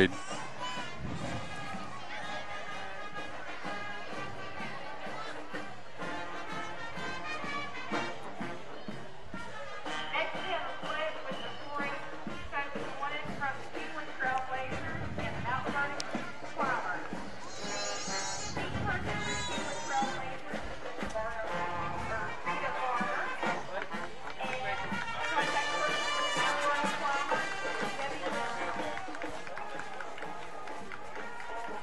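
High school marching band playing as it marches past, trumpets, sousaphones and drums together, at a steady moderate level.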